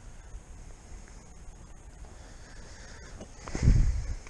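Low wind rumble on a small action-camera microphone, with a louder low rumble near the end.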